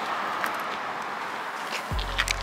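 Steady outdoor background hiss, such as open-air traffic or wind noise, with a few faint clicks. A deep bass tone comes in just before the end as music starts.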